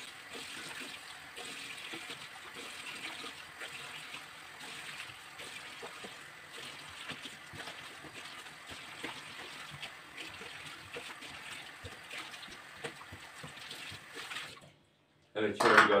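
Kitchen tap running steadily into the sink while green onions are rinsed, with small clicks and knocks of handling. The water cuts off suddenly near the end.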